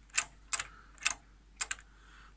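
Head-load mechanism of a Commodore 128D's built-in 1571 double-sided 5.25-inch floppy drive being worked by hand, giving about five sharp clicks at irregular half-second gaps. The drive is missing the lever that presses the mechanism down, and the mechanism no longer moves properly.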